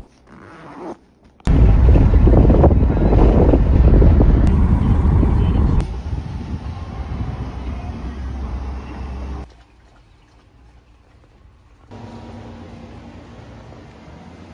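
Loud, low rushing noise inside a car, starting suddenly and cutting in and out several times.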